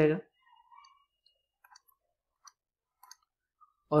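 Faint, scattered clicks of a stylus tapping on a tablet screen as handwriting strokes are made, about six light taps spread over a few seconds.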